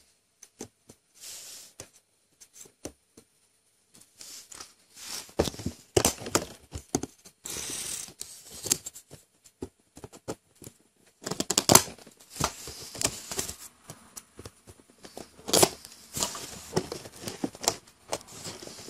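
Stiff clear plastic blister pack being handled and worked open by hand: irregular crinkling, clicks and snaps of plastic with short gaps between. It is sparse at first and busier from about four seconds in, with the sharpest snap about twelve seconds in.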